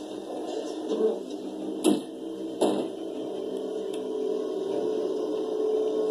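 Two sharp thuds about two-thirds of a second apart, over a steady muffled background hum.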